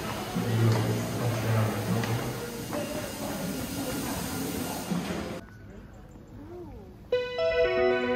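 Busy indoor hall ambience with indistinct voices and hiss, cut off abruptly about five seconds in; after a short quieter stretch, electronic background music with sustained synthesizer notes begins near the end.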